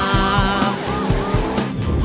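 Upbeat children's song music with a cartoon car sound effect laid over it, an engine note rising in pitch as the police car pulls away.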